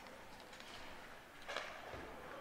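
Faint ice hockey rink sound: skate blades on the ice, with one brief scrape about one and a half seconds in.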